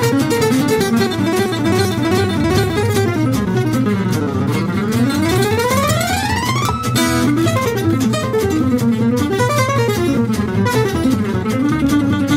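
Acoustic gypsy jazz guitar playing a very fast single-note solo at about 310 beats per minute over double bass and rhythm guitar. About four seconds in, a long run climbs steadily up one string, followed by a short burst of rapid repeated notes.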